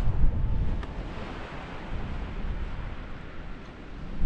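Strong wind buffeting the microphone: an uneven low rumble with a hiss of wind over it, gusting hardest in the first half-second and then easing.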